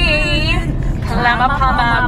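A voice singing along in a moving car's cabin, with long held notes, over a steady low rumble from the road and engine.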